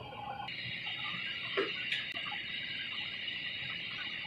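Steady high hiss of background noise that starts abruptly about half a second in, with a faint knock a little over a second later and another soon after.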